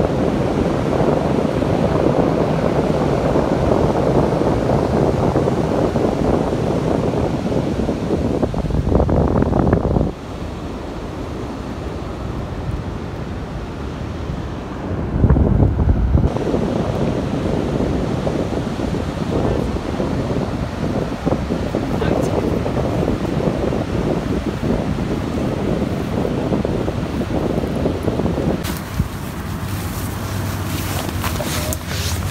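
Wind buffeting the microphone over the steady rush of ocean surf breaking on a flat beach. The rumble of the wind swells and drops in gusts, easing about ten seconds in and surging again about five seconds later.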